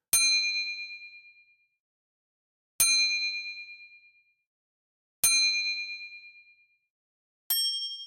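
Bell-like ding sound effect struck four times, about every two and a half seconds, each ring fading out over a second and a half; the last ding is higher-pitched than the first three.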